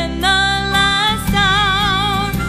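A gospel song: a woman singing, gliding between notes and then holding one with a wavering vibrato, over an instrumental backing.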